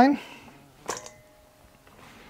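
Hands gathering chopped vegetables on a wooden cutting board: mostly quiet, with one soft click about a second in.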